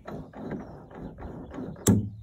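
A Hotellier ball-and-socket control connector with its knurled Uerling locking sleeve handled by hand, with light rubbing and knocking of the metal parts, then one sharp click near the end: the half-engaged ball popping out of the socket as the angle changes.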